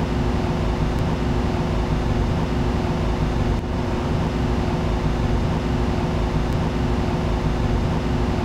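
Steady machine hum with rushing air from laboratory equipment and ventilation, holding one low drone throughout.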